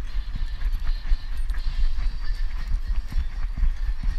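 A back-mounted action camera jostled by a beagle walking and trotting on grass: a fast, irregular run of low thumps from its steps and the harness.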